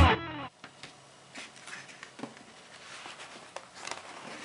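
The last electric-guitar chord of a rock music intro dies away in the first half second. Then come faint, scattered taps and rustles of hands handling a cardboard box.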